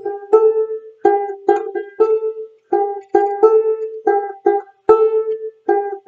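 Banjolele (banjo-ukulele) being picked: a short riff of bright single plucked notes that die away quickly, played over and over.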